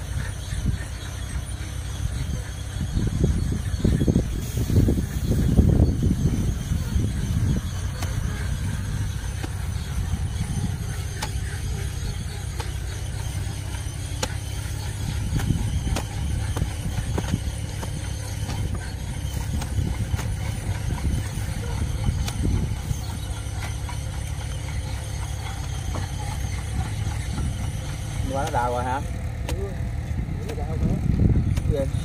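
A steel spade chopping into the dry soil of a rice-field burrow now and then, under a steady low rumble of wind on the microphone that swells for a few seconds early on.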